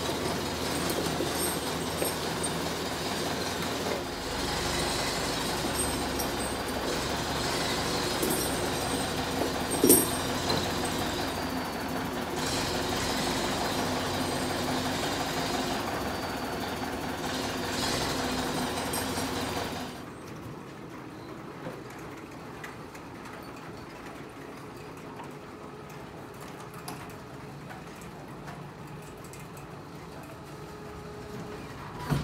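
Diesel engine of a loader tractor running steadily under load as it pushes a snowmobile on wheeled dollies across a concrete floor, with scattered clanks and one sharp knock about ten seconds in. About twenty seconds in the engine sound stops abruptly, leaving only a quieter steady background hum.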